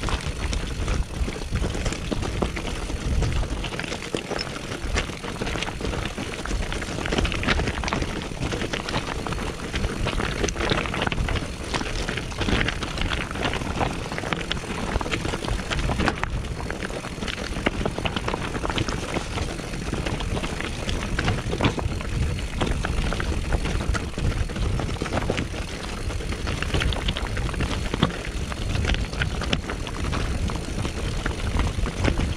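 Mountain bike rolling downhill over a loose rocky track: continuous crunch of tyres on stones with many small clicks and rattles from the bike, and wind rumbling on the microphone.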